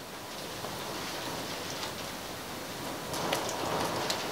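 Water being scooped up in the hands and splashed onto the face, a steady watery noise that grows a little louder near the end.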